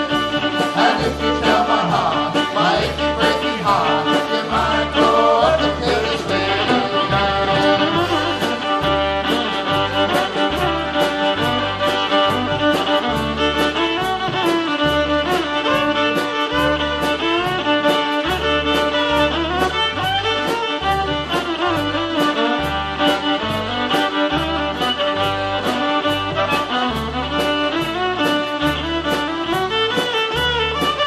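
Live folk band playing an instrumental passage: the fiddle leads over accordion, with a drum kit keeping a steady beat.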